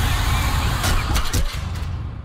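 Sound design for an animated logo intro: a loud, dense rumble with a few sharp hits about a second in, beginning to fade out near the end.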